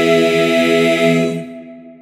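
Men's a cappella chorus holding a sustained final chord, then releasing it together about one and a half seconds in, the chord fading away after the cutoff.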